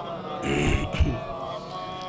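A short pause in a man's amplified chanted recitation, filled by a brief breathy vocal sound about half a second in and a short low thump about a second in.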